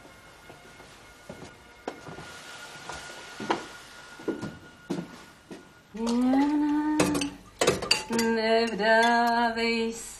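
A few soft clinks of cutlery against crockery. About six seconds in, a woman's voice starts singing a slow, held tune, broken by a few sharp knocks of a spoon against a cooking pot.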